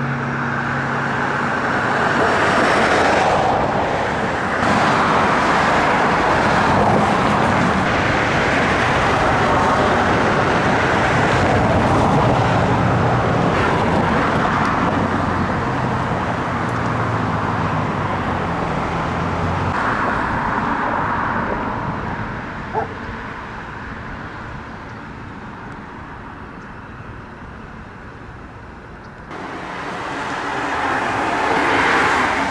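Road traffic, cars passing with an engine hum in the first part. It turns quieter about two-thirds of the way in, with a single sharp click a little before that.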